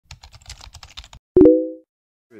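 Intro sound effect: a quick run of soft clicks, about ten a second, like typing. Then one loud pitched pop rings briefly and fades away.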